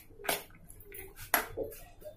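A metal spoon stirring a moist salad of boiled chana dal and chopped vegetables in a bowl: soft wet squishing, with two sharper scrapes of the spoon in the bowl about a second apart.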